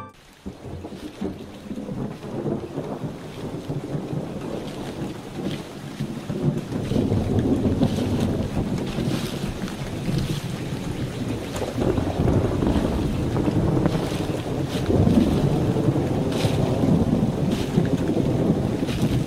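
Low, rumbling wind noise that fades in over the first seconds and grows louder about seven seconds in, with faint scattered ticks above it.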